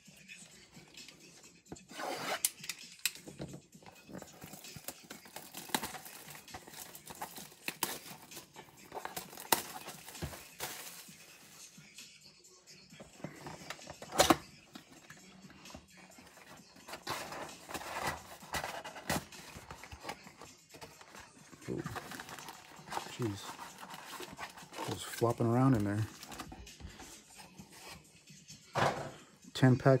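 Plastic wrap and seal on a Donruss Optic trading-card mega box crinkling and tearing, then the cardboard box flaps opened and the foil card packs rustling as they are handled, with scraping and one sharp click about halfway through.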